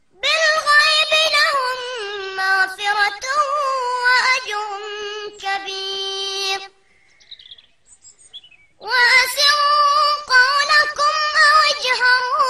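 A child's high-pitched voice reciting the Quran in melodic chanted tajweed: one long phrase, a pause of about two seconds, then a second long phrase.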